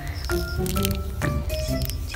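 Soft background music of short held notes, playing under the room.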